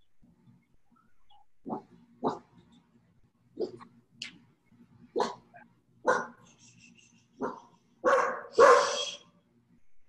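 A dog barking: short single barks about once a second, the last two near the end louder and longer.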